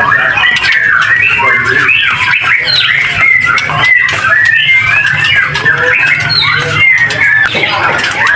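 Many caged white-rumped shamas (murai batu) chirping and calling over one another in a busy chorus, with a steady low hum underneath.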